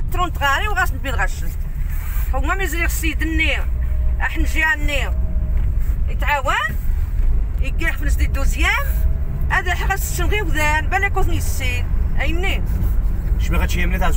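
Steady low rumble of a car on the move, heard from inside the cabin, with speech over it.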